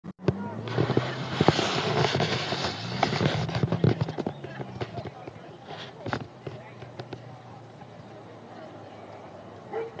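Handling noise from a camcorder being moved and settled: loud rustling with a run of knocks and clicks for the first four seconds or so, then a much quieter outdoor background with faint voices and a few small clicks.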